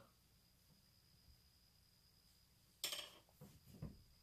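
Near silence: room tone, broken about three seconds in by a brief soft noise and then a faint low bump just before the end.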